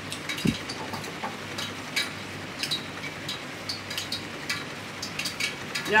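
Sloppy joe ground beef sizzling steadily in a skillet on a gas burner, with scattered clicks and scrapes of a spoon stirring it.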